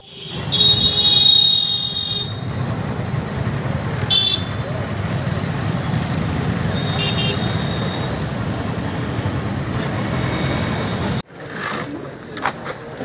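Road traffic with a vehicle horn: a high-pitched horn sounds for about a second and a half near the start, then gives short toots about four and seven seconds in, over a steady traffic rumble. The traffic noise stops abruptly about eleven seconds in.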